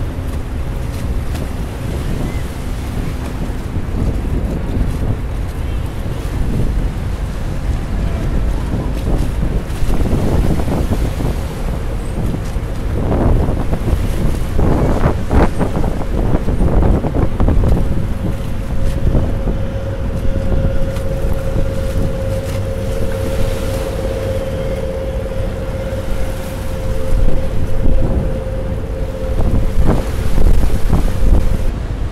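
Wind buffeting the microphone over river water slapping against a pier, with a passenger ferry's engines running as it pulls away; a steady hum joins in over the last third.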